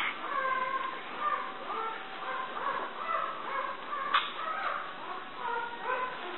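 A run of short, high-pitched animal calls, one after another, with a sharp click about four seconds in.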